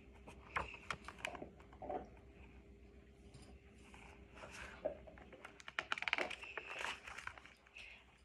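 Pages of a picture book being handled and turned, with scattered soft clicks and paper rustles and a denser burst of rustling about six seconds in as a page goes over. A faint steady hum sits underneath.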